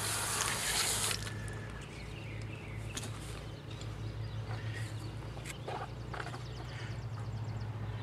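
Water spraying from a garden-hose nozzle onto a plastic cutting board, shutting off about a second in. After that a steady low hum remains, with faint ticks and a few short high chirps.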